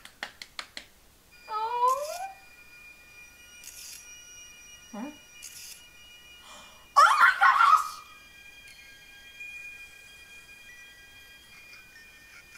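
A quick run of hand claps in the first second, then a short rising voice. Soft held music tones follow, broken by a loud breathy burst about seven seconds in.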